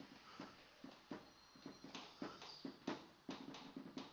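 Faint, irregular taps and clicks, a few a second, with a brief faint high squeak about a second and a half in.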